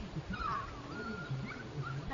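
Puppy whining: one thin, high whimper that wavers in pitch, starting about half a second in and lasting over a second, over a low background rumble.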